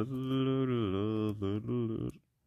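A man's voice singing a wordless tune to himself in a low pitch: one long held note, then a short break and a second, shorter note.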